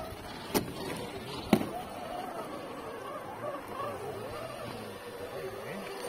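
Two sharp knocks about a second apart, the second louder, followed by faint background voices.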